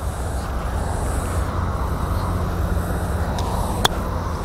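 A steady low outdoor rumble, then near the end a single sharp click as an iron's clubface strikes a golf ball on a short pitch shot.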